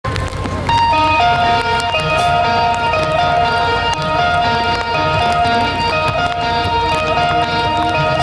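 Live rock band with electric guitar, bass and drums playing the instrumental intro of a song: a melody of long held high notes over a steady bass and drum beat with cymbal strokes.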